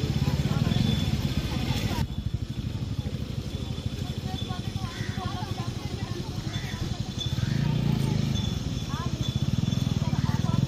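Indistinct voices of people talking in the background over a steady, fast-pulsing low rumble, with an abrupt change in the sound about two seconds in.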